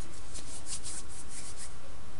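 Steady background hiss with faint, brief scratching strokes through the middle.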